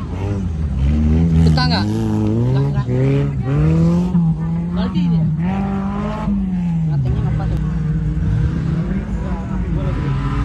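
Off-road racing vehicle's engine revving hard on a dirt track. Its pitch climbs in steps over the first few seconds, holds high, then falls away after about six seconds.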